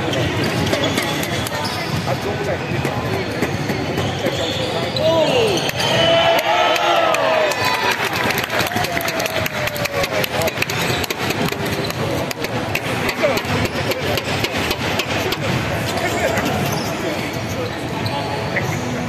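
Basketball game on a hardwood court: the ball bouncing on the floor as it is dribbled, a burst of sneaker squeaks about five to eight seconds in, and players' and spectators' voices in a large hall.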